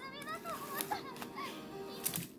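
Faint children's voices in the background, chattering with a wavering pitch, and a couple of light clicks.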